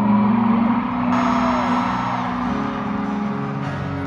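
Live concert music through an arena PA: an acoustic guitar plays long, ringing held chords, heard from far back in the audience.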